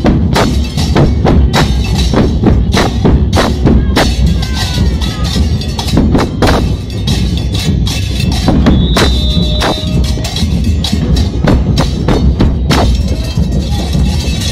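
Murga carnival drum section: several large bombos con platillo, bass drums with a cymbal mounted on top, beating a fast, loud, continuous street rhythm of booming strokes and cymbal crashes.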